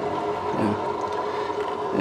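The engine of a 1954 Northwest 80-D cable crane running steadily, a constant hum that holds several even tones.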